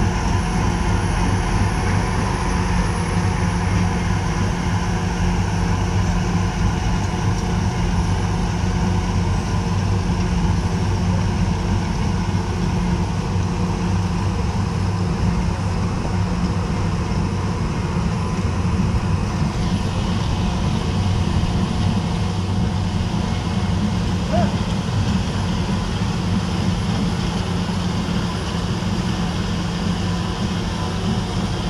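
Marais ST2 trencher's diesel engine running at a steady speed, a constant low drone that does not change pitch.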